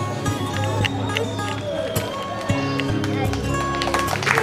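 Background music with steady held notes, a voice heard over it.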